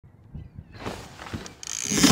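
Fishing reel ratcheting as a fish is hooked: a few soft knocks, then clicking that grows louder over the last half second.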